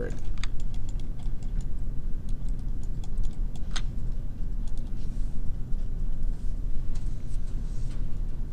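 Scattered computer mouse and keyboard clicks over a steady low hum.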